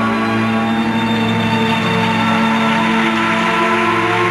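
Recorded orchestral music for a pairs figure skating program, with long sustained notes held at a steady level.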